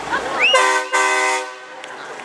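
Semi truck's air horn blown in two blasts, about a second in all, with a short break between them.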